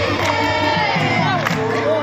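A large crowd of devotees singing a devotional chant together as they walk in procession, many voices at once, with hand clapping.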